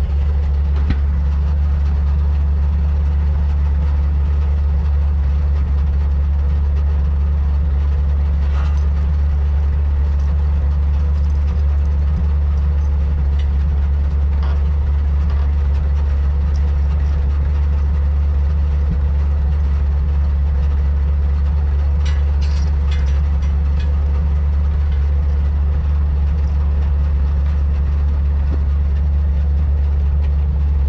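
Engine of an old side-loader log truck idling steadily, with a few faint clinks now and then.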